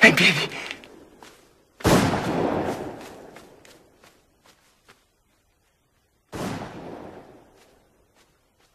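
Two gunshots, each ringing out with a long echoing tail: a louder one about two seconds in and a second one about six seconds in.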